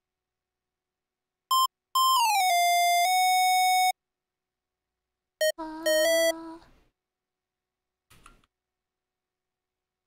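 Square-wave synth lead notes sounding one at a time as they are entered in a piano roll: a short beep, then a note that glides down in pitch and is held for about two seconds. A few seconds later comes another short beep and a fuller, lower synth tone about a second long, then a faint blip.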